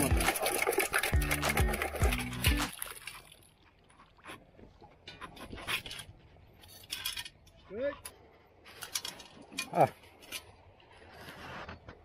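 Perforated stainless-steel sand scoop digging into wet mud in shallow water, then water and sand sloshing and draining through it, with scattered sharp metallic clinks as it is shaken.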